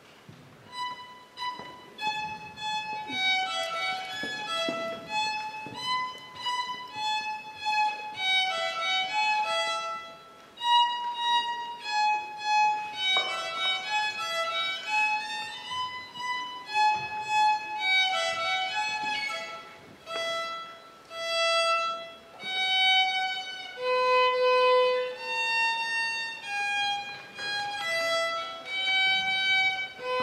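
Solo violin playing a simple melody with no accompaniment, one note at a time, beginning about a second in.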